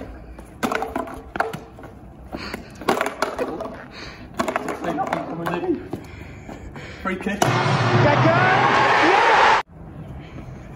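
An empty can kicked and dribbled across cobblestones, clattering and scraping in a run of sharp knocks. About seven seconds in, a loud stadium crowd cheering cuts in and stops suddenly about two seconds later.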